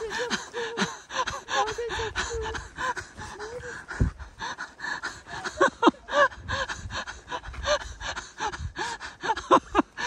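A woman's wordless excited exclamations and gasping laughter, short rising-and-falling "oh" and "wow"-like cries scattered through, with many small crackling clicks underneath.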